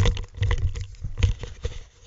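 Loud handling noise close to the microphone: rustling, knocks and a deep rumble as a hand moves right by the recording device, starting suddenly and fading out near the end.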